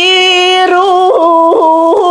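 A woman singing solo and unaccompanied in toyuk, the traditional Sakha (Yakut) singing style. She holds long notes, broken twice by quick leaps up and back down.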